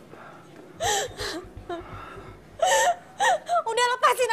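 A woman crying out in distress, a few short gasping wails with sliding pitch, and voices starting up near the end.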